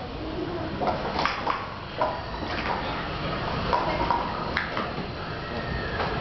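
Plastic sport-stacking cups clacking in short, scattered clicks as a 3-3-3 stack is built up and taken down on a hard table.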